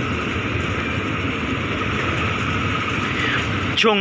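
Freight train of oil tank wagons rolling past on the adjacent track: a steady rumble of steel wheels on rail, even in level throughout.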